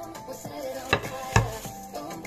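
Two sharp clacks of kitchenware on a wooden worktop, about half a second apart, over background music.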